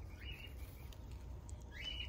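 Two short bird chirps, one near the start and a rising one near the end, over a faint low rumble.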